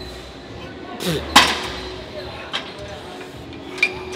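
Gym leg extension machine mid-set, its weight stack giving a sharp metallic clink about a second and a half in, with a brief strained grunt just before it and a lighter clink near the end, over faint background music.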